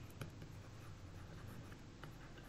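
Faint scratching and light tapping of a stylus writing words by hand on a digital writing surface, with one sharper tap just after the start.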